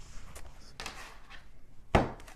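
Quiet handling of a deck of tarot cards: a soft rustle about a second in and a single sharp click near the end.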